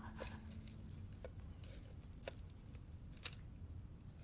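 Faint, sparse metallic clinks about once a second, the clearest near the end, as the metal ornaments of a damaged phoenix crown are handled.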